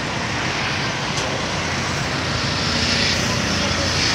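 Steady vehicle engine and traffic noise with no distinct events, heard as a car is driven slowly aboard an enclosed car carrier.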